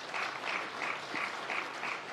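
Audience applauding, with an even pulse of about three claps a second running through it.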